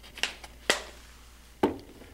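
Three short knocks and clicks as things are handled on a lab bench, the last and fullest near the end as the plastic water bottle is set down on the benchtop.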